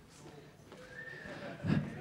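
Audience applause and cheering in an auditorium, growing louder, with a single high whoop about a second in and a brief voice near the end.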